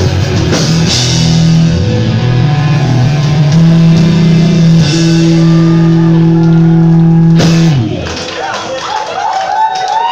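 Punk rock band playing live: loud electric guitars and drums ringing out a held final chord that cuts off suddenly near the end of the song, about eight seconds in. Then the crowd cheers, whoops and claps.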